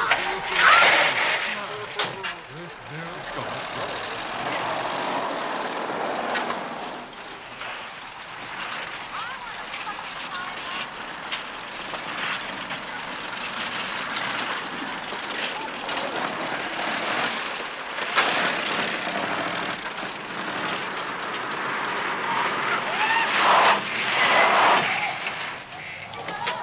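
A car engine running as the car drives off, with laughter over it. The sound swells near the start and again near the end.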